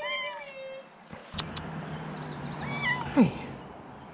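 Cat meowing from a tree branch: a short meow that rises and falls at the start, followed by a few sharp clicks about a second in.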